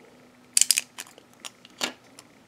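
Beyblade Burst top being twisted apart by hand, its plastic parts clicking as they unlock: a quick cluster of clicks about half a second in, then single clicks, the last near the end.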